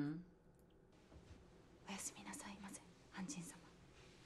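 Faint whispered speech, two short whispered phrases about two seconds in, after a hummed 'mm' that ends at the very start.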